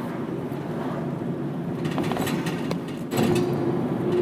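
Steady hum inside a vehicle cab, the kind of sound a van makes with its engine idling. About three seconds in, this changes suddenly to a slightly louder steady hum with a single held tone.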